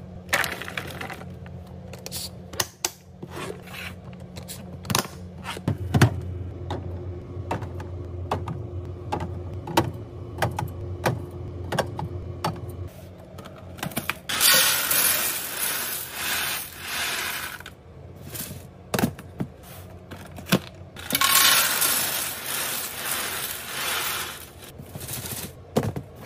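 Clear plastic containers and drink cans being set down and slid into place, a string of sharp clicks, clinks and knocks. Near the end, dry cereal is poured from a box into a plastic canister in a rushing pour.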